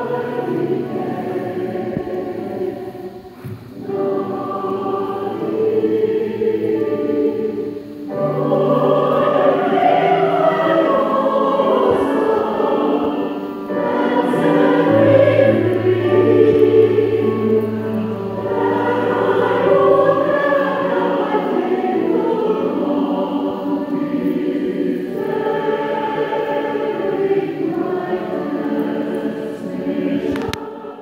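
Mixed choir singing a slow choral requiem with chamber orchestra, in long sustained phrases separated by short breaks. A low note is held steadily for several seconds in the middle.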